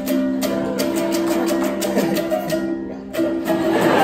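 Ukulele strummed in quick, even strokes, its chords ringing on. The strumming breaks off briefly just before three seconds in, then starts again.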